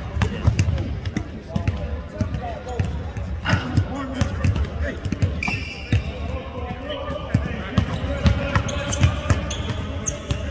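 Basketballs bouncing on a hardwood court: repeated dribbles and bounces from several balls, in an irregular run of thumps.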